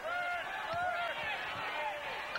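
Voices over the steady background noise of an arena crowd at a televised basketball game, with a couple of faint dull thuds about a second in.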